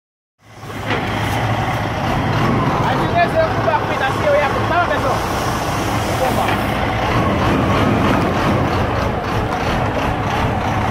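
Semi truck's diesel engine idling with a steady low hum, with voices in the background.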